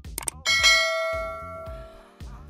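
Subscribe-button animation sound effect: a quick pair of clicks, then a bright bell chime about half a second in that rings and fades over about a second and a half, over background dance music.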